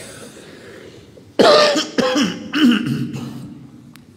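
A person coughing and clearing their throat: three quick, loud coughs starting about a second and a half in, the first the loudest.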